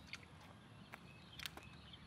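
Near silence: faint outdoor background with a few faint short clicks, the clearest about one and a half seconds in.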